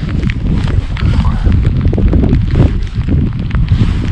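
Wind rumbling on a GoPro microphone in the rain, with irregular sharp clicks and taps as a carp angler's spinning reel is wound in.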